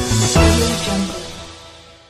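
News intro theme music ending on a last loud hit about half a second in, then a held chord that fades away.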